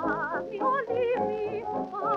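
A 1929 British dance band recording played from a shellac 78 rpm record: a melody of short notes with a wide, quick vibrato over a steady accompaniment.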